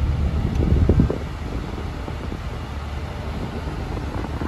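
Steady low hum inside a parked car's cabin, from the running car and its ventilation, a little louder with some rustle in the first second.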